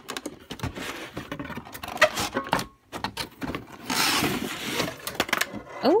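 Plastic toy house being slid out of its cardboard box: cardboard and plastic rubbing and scraping, with irregular small knocks and a denser stretch of scraping about four seconds in.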